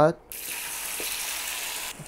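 Crumbled tofu dropped into hot oil in a frying pan, sizzling: it starts suddenly about a third of a second in, holds as a steady hiss, and cuts off near the end.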